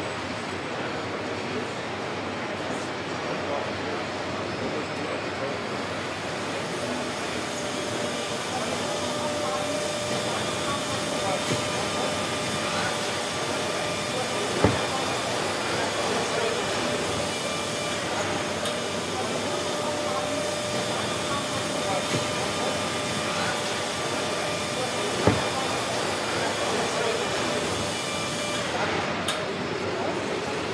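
Steady assembly-line machinery noise on a factory floor: a constant hiss and hum with faint steady whines. It is broken by two sharp knocks about ten seconds apart.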